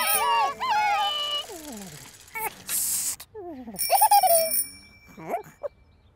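Wordless, squeaky cartoon-character vocal sounds in short calls that slide up and down in pitch, with a short breathy burst near the middle. A light bell-like chime rings at the start and again about two-thirds in.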